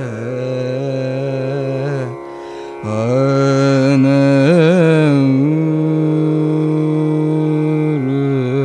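A young male Carnatic vocalist improvising a raga alapana over a steady drone, with wavering ornamented phrases (gamakas) and a short break about two seconds in. He ends on a long held note.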